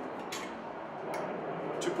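A few light metallic clicks, spread out, from the steel far side support leg being handled against a steel 4-inch square junction box mounted on a metal stud.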